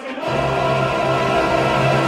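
Opera chorus singing a loud held chord, the voices coming in together about a quarter second in.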